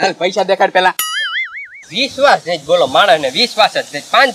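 Men talking, broken about a second in by a cartoon 'boing' sound effect: a short tone that rises and wobbles for under a second before the talk resumes.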